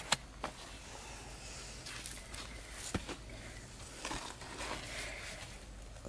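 Faint scraping and rustling of a garden trowel worked around the inside of a plastic seedling tray, loosening a block of soil and larkspur seedlings, with a few short clicks near the start and about three seconds in.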